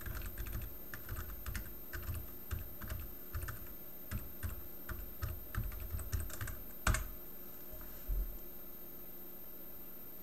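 Typing on a computer keyboard: a run of irregular keystrokes for about seven seconds, ending in one sharper, louder key press, then a single low thump about a second later before it goes still.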